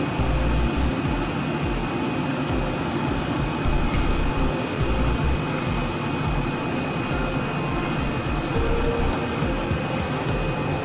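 CNC flatbed knife-cutting plotter running, a steady machine roar with low rumbling surges as its tool heads travel over a printed box sheet.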